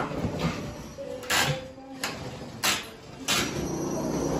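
Three short scraping sounds, about a second apart, from work among demolition debris on a bare wooden plank floor.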